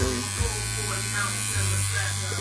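Electric tattoo machine buzzing steadily as the artist works the needle into skin, a little louder from about one and a half seconds in.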